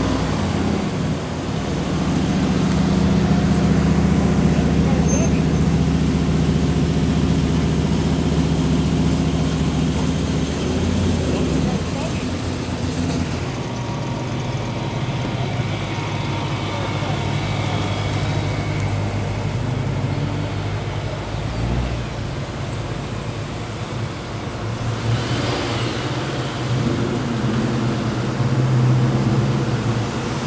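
Several cars driving slowly past one after another with their engines running at low speed. Each engine sound swells and gives way to the next as the cars go by, loudest in the first ten seconds or so.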